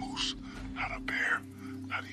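Whispered voice over background music with a steady low drone.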